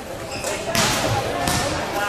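Two sharp thuds of gloved kickboxing blows landing, about three quarters of a second apart, the first the louder. Spectators' and cornermen's voices carry on underneath.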